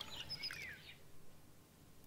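Faint songbird twittering, laid in as a background sound effect: a quick run of high chirps and a falling whistle in the first second, fading away to near silence.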